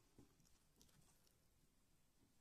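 Near silence, with a few faint soft ticks from a metal crochet hook drawing yarn through stitches.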